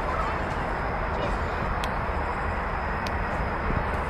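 Outdoor ballfield crowd noise: faint distant voices of players and spectators over a steady low rumble, with a thin steady high tone. Two sharp clicks, about two and three seconds in.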